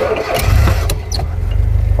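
Open safari vehicle's engine being started: a brief crank, then it catches about half a second in and runs with a steady low rumble.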